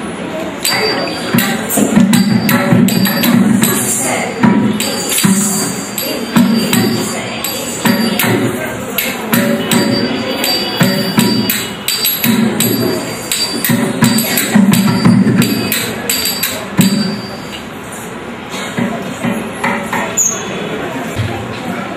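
Live mridangam drumming, a dense run of strokes with repeated deep beats, over a metallic jingle and clink from small hand cymbals and ankle bells keeping time.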